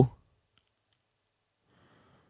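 The tail end of a man's spoken word, then near silence.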